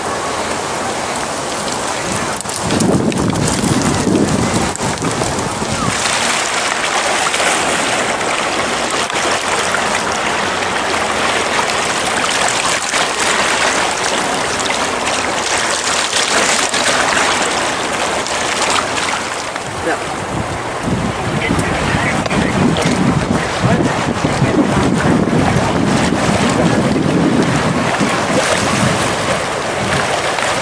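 Wind blowing across the camera's microphone, rumbling in gusts, over a steady rushing noise of wind and waves on open water.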